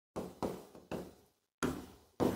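Stylus knocking against an interactive display board as a word is handwritten on it: four short, irregular knocks.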